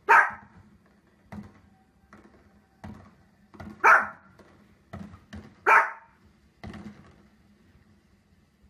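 A small Pomeranian-type dog barking: three loud, sharp single barks about two seconds apart, with fainter short thuds in between.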